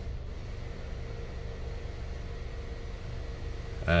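Steady low hum inside a 2014 Nissan Rogue's cabin with the vehicle switched on, a faint steady tone over it.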